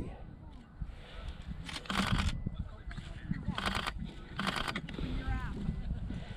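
Faint voices of onlookers over a steady low wind rumble on the microphone, with three short, bright noisy bursts about two, three and a half, and four and a half seconds in.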